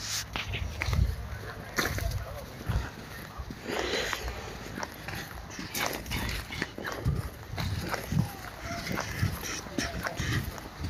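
Footsteps on a dirt path, about one a second, with the phone's microphone picking up handling and the rustle of a jacket.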